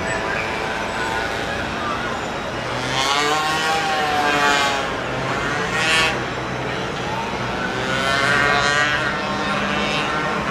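Car engines accelerating through a city intersection, their pitch rising and falling as the cars pass. The engines are loudest about three to five seconds in and again near the end, over steady traffic noise.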